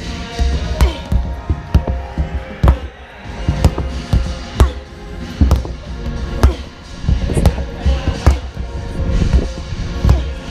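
Background music with a steady beat, mixed with the dull thuds of sledgehammers striking large rubber tractor tires, several people hitting out of step with one another.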